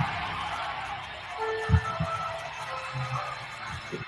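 Film teaser soundtrack: sparse, dark music with faint held tones over a steady hiss, and deep low thumps, two close together about halfway in and one near the end.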